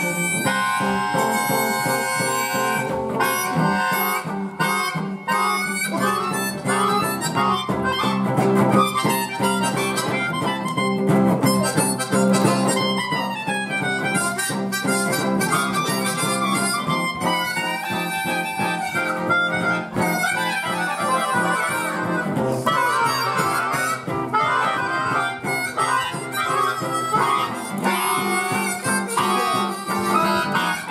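Blues harp (diatonic harmonica) played live through a vocal microphone, wailing melodic lines with bends and slides over guitar accompaniment in a blues.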